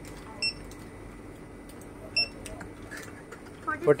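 Checkout barcode scanner beeping twice, about a second and a half apart, as items are scanned, each a short high electronic beep.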